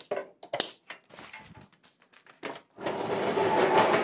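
Scattered clicks and knocks as a plasma cutter on its metal shop cart is handled. About three seconds in comes a loud, steady rattling rumble as the wheeled cart is pulled across the concrete floor.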